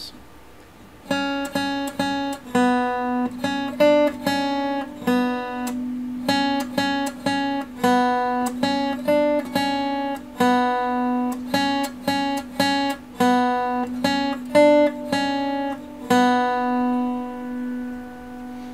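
Acoustic guitar playing a simple single-note melody on the B string, notes plucked one at a time at the second and third frets and open. The same short phrase is played several times, the last open note left ringing.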